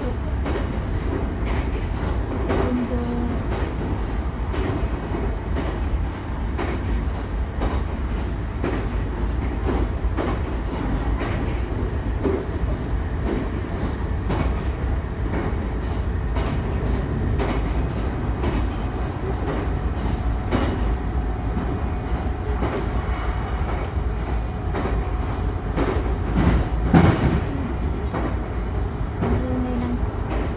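Shinano Railway train running, heard from inside the carriage: a steady low rumble with repeated clicks of the wheels over the rails. There is a louder knock about 27 seconds in.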